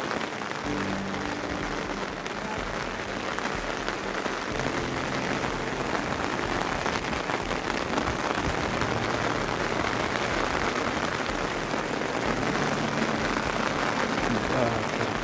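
Steady rain falling on open umbrellas, heard as a constant even hiss that builds slightly over the first few seconds.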